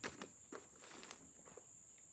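Near silence, with a few faint short clicks and a steady faint high-pitched hiss.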